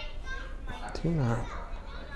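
Soft, indistinct speech in which a young child's voice is heard, with its loudest stretch about a second in.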